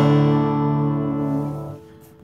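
Acoustic guitar in drop D tuning, the song's last strummed chord ringing out and then dying away a little before the end.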